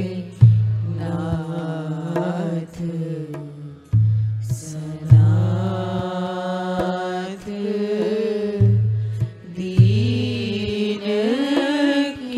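Devotional Hindi bhajan: a voice singing a slow, drawn-out melody over a deep drum that booms in a repeating pattern, two strokes roughly every four and a half seconds.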